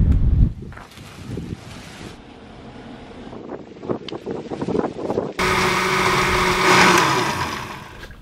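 Wind buffeting the microphone at first, then a few light clicks and knocks; about five seconds in, a countertop blender starts abruptly and whirs loudly for about two seconds, crushing ice for a smoothie, before winding down near the end.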